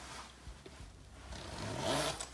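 Rustle of a pullover-style jacket being handled, with its short chest zipper drawn in a rasp that swells near the end.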